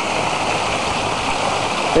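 Water pouring from a wooden chute into a round wooden whirlpool tub (a Romanian vâltoare), churning with a steady rushing sound.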